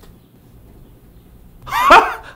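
A quiet room hush, then near the end a man's loud, drawn-out shout.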